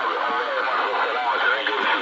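Amateur radio receiver tuned to 7150 kHz on the HF (40 m) band, playing voice traffic through its speaker: thin speech with no low end, over steady band hiss.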